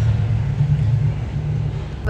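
A steady, loud, low rumble, easing slightly in the last half second.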